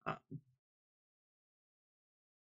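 A woman's short hesitant "uh", then dead silence.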